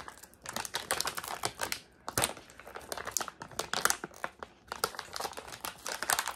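Toy packaging crinkling and clicking in the hands, a quick irregular run of small clicks and crackles, with a slightly louder snap about two seconds in, as a Puppycorns surprise package resists being opened.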